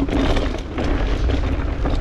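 Wind buffeting an action camera's microphone while a mountain bike rolls along a dirt trail, a steady rumbling noise with tyre crunch.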